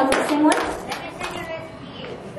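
Audience applause dying away in the first half second, mixed with voices in the room, then a quiet stretch of room murmur.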